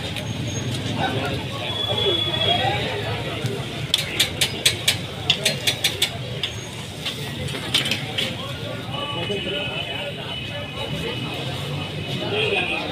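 A metal spatula clanking against a flat iron griddle: a quick run of about ten sharp clacks about four seconds in, over indistinct background chatter.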